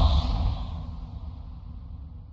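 A cinematic whoosh transition sound effect with a deep rumble. It peaks at the start and fades slowly away.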